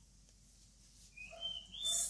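Near silence for about a second, then a bird calling faintly in the background: a few thin, high chirps that rise in pitch.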